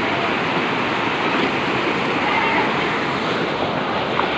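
Flash-flood water rushing fast over a street, a steady loud churning roar without a break.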